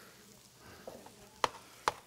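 Faint kitchen background with two sharp clicks of metal serving utensils against a plate, about half a second apart, near the end.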